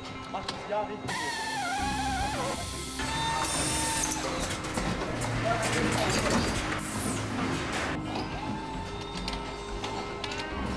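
Background music over car-assembly-line noise at a wheel-mounting station: machine hum with scattered metallic clicks and clanks.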